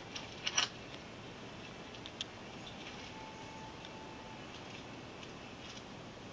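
Faint steady hiss with a brief cluster of clicks and rustling about half a second in and a single click about two seconds in.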